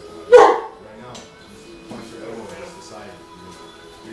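A dog barking once, loud and sharp, about a third of a second in. Music plays steadily underneath.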